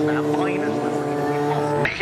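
Flatbed recovery truck's engine running at a steady pitch, with loudspeaker race commentary behind it; the sound cuts off abruptly just before the end.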